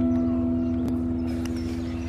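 A guitar chord ringing on as several steady notes, slowly fading, with a faint click about a second in.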